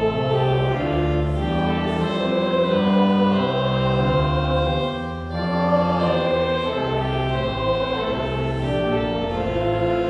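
Hymn sung by a group of voices with organ accompaniment, the organ holding long low notes beneath the melody.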